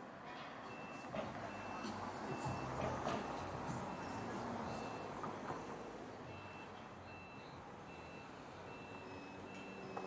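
Forklift backup alarm beeping, a little more than one high beep a second with a short break partway through, over the working forklift's engine. A few sharp knocks sound as metal fencing is handled.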